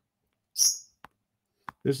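A short breathy hiss from a man drawing breath about half a second in, then two faint mouth clicks, before his speech resumes near the end.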